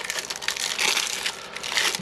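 Plastic shrink wrap crinkling and crackling as it is peeled off a deck of game cards by its tear strip.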